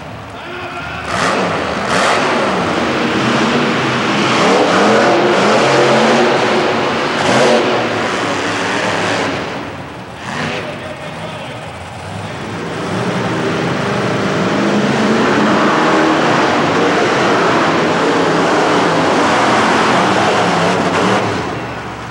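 Monster truck engines revving and running hard, in two long loud surges with a short lull about ten seconds in.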